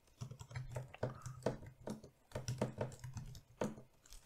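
Keys clicking on a computer keyboard in a quick, irregular run as a command is typed out, over a faint low hum.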